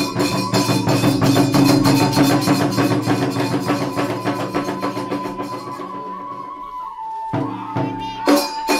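Iwami kagura hayashi in the fast hachi-chōshi style: rapid clashing of small hand cymbals and drum strokes under a held flute note. The beat thins out and stops about six seconds in, and a single loud stroke lands near the end.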